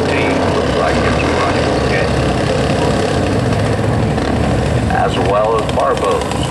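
Small open-wheel race car engines and a four-wheeler idling steadily on a dirt track during a caution, with a voice heard briefly near the end.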